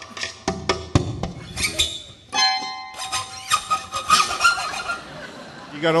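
Amplified steel-string acoustic guitar played as a percussion instrument: sharp knocks and slaps on the wooden body picked up by its internal microphone, then ringing string notes from about two and a half seconds in.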